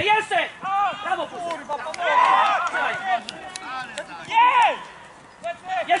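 Voices shouting across an outdoor football pitch, several at once and loudest about two to three seconds in, with another loud shout about four and a half seconds in.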